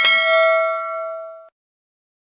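Notification bell 'ding' sound effect: one bright bell strike with several ringing tones, fading and then cutting off abruptly about one and a half seconds in.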